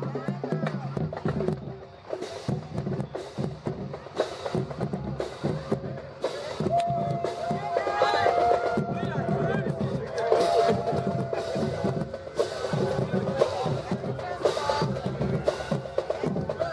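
Marching band drums beating a cadence, with a couple of held horn-like notes in the middle, over the chatter of onlookers.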